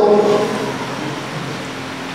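A pause in a speech delivered through a microphone in a large hall: the last word fades out in the room's echo over about half a second, then a steady background hiss of room noise remains.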